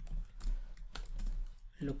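Typing on a computer keyboard: a run of quick key clicks, about four a second.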